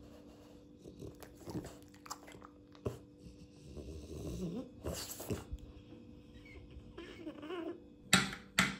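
A French Bulldog snuffling and making small throaty sounds a few times, loudest around the middle and again near the end, over a faint steady hum.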